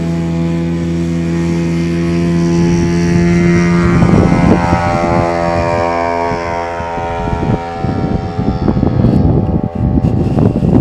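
Model tow plane's engine and propeller running at takeoff power as it aerotows a scale Lo 100 glider off the ground and climbs away: a steady, loud drone whose pitch eases down a little as it pulls away. Gusts of wind buffet the microphone from about four seconds in.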